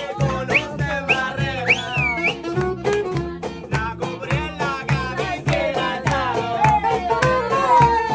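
Live acoustic band playing an upbeat song: strummed acoustic guitar keeping a steady rhythm under a saxophone melody that bends and slides in pitch, with a long downward slide near the end.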